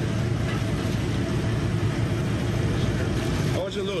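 A deep, steady machine drone that cuts off suddenly about three and a half seconds in.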